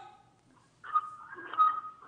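A short pause, then about a second in a person's voice holding a drawn-out, wavering hum or vowel.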